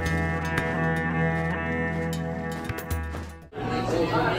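Background music with a sustained bass line and a steady beat, cut off about three and a half seconds in. It gives way to the chatter of a busy room.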